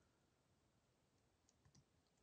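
Near silence, with a couple of faint computer keyboard keystrokes in the second half.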